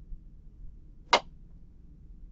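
A single sharp click of a computer mouse button about a second in, over a faint low hum.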